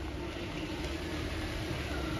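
White GAC Trumpchi SUV rolling slowly forward, its engine running with a steady low hum.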